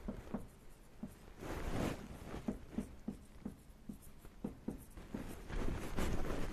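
Marker pen writing on a whiteboard: a run of short strokes and taps as an equation is written out, with a longer stroke about one and a half seconds in.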